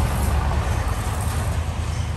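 A loud, steady low rumble with a fainter hiss above it.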